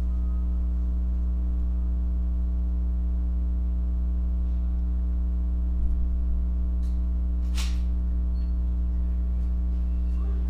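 Steady low electrical hum with a stack of higher overtones, unchanging throughout; a brief soft noise about seven and a half seconds in.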